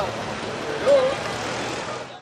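Road traffic: cars driving past, a steady wash of engine and tyre noise.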